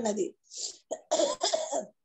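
A person coughing and clearing their throat in short bursts between spoken phrases.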